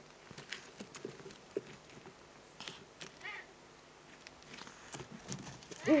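Scattered rustles and clicks of Eurasian eagle-owls moving on the dry leaf litter of the nest ledge. Near the end comes a short, loud owl call whose pitch rises then falls.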